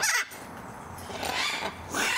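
Macaw squawking twice with raspy calls: a short one at the start and a longer one about a second and a half in.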